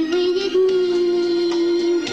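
A pop song sung over a backing track, with one long note held through the moment that steps up slightly about half a second in.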